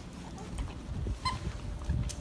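Dog playing with a plush toy in a concrete kennel run: one short, high squeak about a second in, over low rumbling noise.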